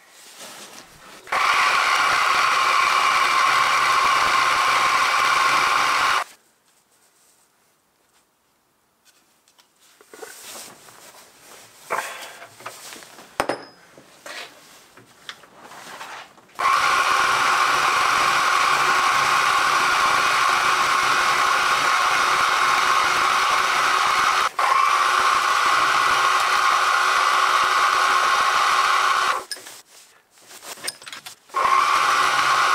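Small bench milling machine running, an end mill taking facing cuts on a small metal bearing-cap casting held in a vise. The spindle runs steadily for about five seconds, stops, and after a stretch of scattered clicks and handling runs again steadily for about thirteen seconds, with a brief dip midway.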